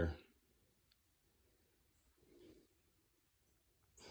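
Near silence as a man's voice trails off at the very start, with one faint click about half a second in.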